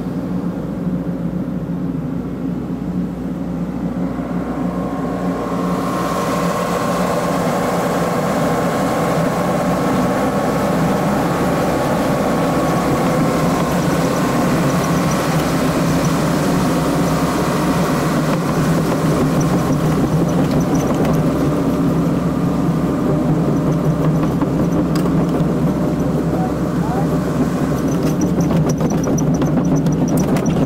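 Excavator's diesel engine running steadily, heard from inside the cab, growing fuller and a little louder about six seconds in as the machine works under load.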